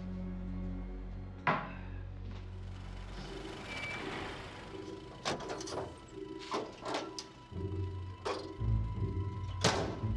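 Dark film-score music, a low drone that turns into a steady pulsing beat, with a brief rushing hiss midway. From about five seconds in, a string of sharp thuds and knocks cuts through, the loudest just before the end.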